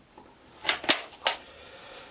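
A few sharp clicks and knocks, three or four within about a second, as a belt rig with a Safariland holster is picked up and handled.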